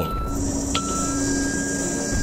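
Sci-fi cloaking device sound effect as the cloak disengages: a steady electronic hum under a high hiss, with two short beeps and a click in the first second.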